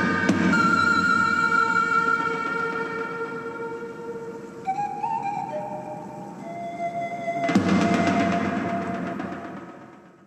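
Film score music: a slow melody of long held notes over sustained tones, stepping down in pitch about halfway, swelling again about seven and a half seconds in, then fading out at the end.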